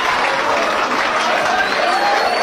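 Applause with crowd voices, a steady dense clapping, added as a laugh-and-applause track after the punchline.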